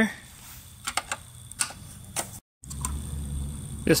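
A screwdriver turning out the screws on the plastic top housing of a Hayward suction-side pool cleaner: a few light clicks, then the sound cuts out briefly and a low hum follows.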